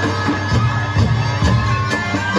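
Live band music with a steady drum beat about twice a second.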